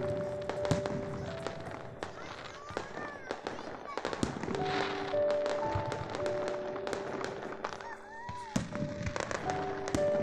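Aerial fireworks going off, a rapid run of sharp bangs and crackles throughout, with music of long held notes playing over them for much of the time.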